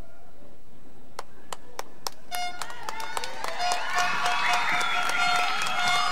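Audience applause: a few scattered claps about a second in, swelling after about two seconds into full clapping with whistles and shouted cheers.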